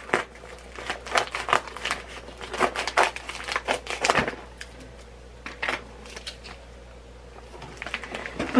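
A shipping package being cut and pulled open by hand: a run of irregular sharp crinkles and snaps, dense for about four seconds, then sparse.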